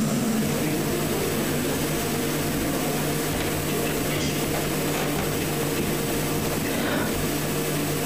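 Steady room noise of a large hall picked up by the microphone: a constant electrical-sounding hum with an even hiss over it and no clear events.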